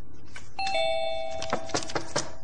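Doorbell chime, a two-tone ding-dong, sounding about half a second in and ringing on, followed by a few sharp taps near the end.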